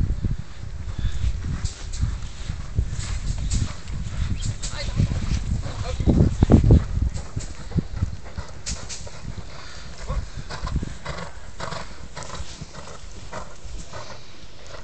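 Horses' hooves thudding on a sand arena as ridden horses canter past, with the heaviest low thuds about six to seven seconds in.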